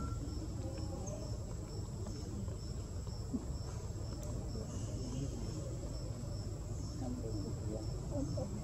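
An insect chirping in a steady, high-pitched rhythm, about two chirps a second, over a steady low rumble.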